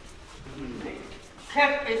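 Speech: a woman's voice, loud and high-pitched, starting about one and a half seconds in, with quieter talk before it.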